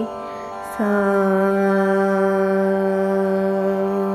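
A girl's voice singing Carnatic music in raga Hamsadhwani. A phrase ends at the start, and after a short breath she slides slightly down into one long, steady held note that lasts about three seconds. A steady drone sounds underneath.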